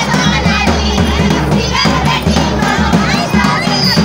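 Jhumur folk dance music: drums keeping a steady rhythm under a group of voices singing and calling out together.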